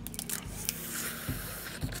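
Mouth sounds of a person eating a boiled crawfish held to the lips: a few small clicks, then a longer sucking and slurping at the shell.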